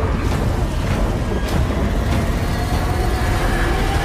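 Film-trailer sound of a stormy sea: a loud, steady rush of heaving, crashing waves, with dramatic music faintly underneath.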